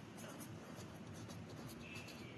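Felt-tip marker writing on paper: faint, irregular scratching strokes of the tip across the sheet.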